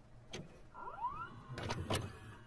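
Videocassette recorder mechanism engaging play, with mechanical clicks and clunks and a short rising motor whine about a second in.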